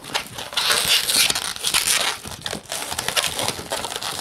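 Latex 260 modeling balloons rubbing and twisting against each other in the hands, a busy run of scratchy rubbing noise with many short clicks, as a pinch twist is made in the black balloon.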